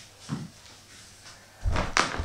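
Thuds of a person getting up from a mat and stepping barefoot across wooden floorboards, with louder low thumps close to the microphone near the end.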